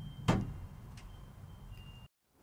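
Low room tone with a sharp click about a quarter second in and a fainter click about a second in.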